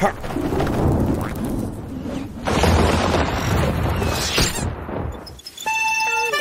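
A loud, rough rumbling noise with two short rushing sweeps, one at the start and one about four and a half seconds in; it fades out near the end as music with clear notes comes in.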